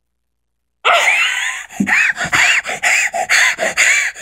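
A boy screaming at the top of his voice, starting about a second in: one long raspy yell, then a string of short high-pitched shrieks, about two a second.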